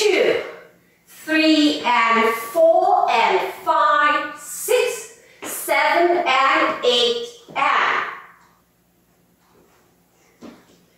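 Speech only: a woman's voice calling out the dance counts in short groups.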